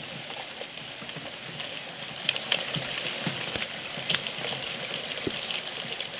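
Electrical wires being pulled through PVC conduit: a steady hissing rub with scattered clicks and knocks.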